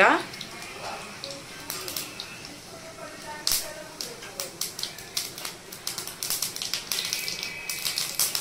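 Mustard and cumin seeds crackling in hot ghee in a steel kadhai, the tempering stage of an Indian bhaji. The pops are sharp and irregular and come thicker toward the end.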